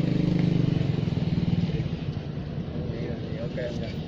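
A vehicle engine running steadily, its hum fading out about two seconds in.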